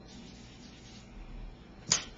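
A single sharp hand clap near the end, standing out over faint room noise.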